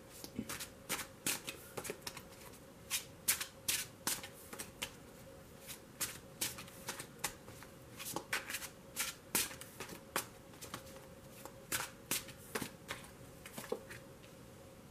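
A deck of tarot cards being shuffled by hand, with irregular clusters of quick card slaps and flicks.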